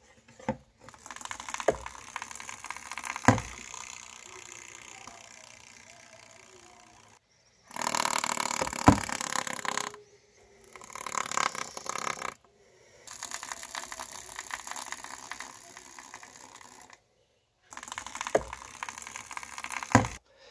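Eastern rat snake (black rat snake) rapidly vibrating its tail against the floor of a plastic container, a dry buzzing rattle in several stretches broken by short silences, loudest about eight seconds in. It is a defensive display that imitates a rattlesnake's rattle.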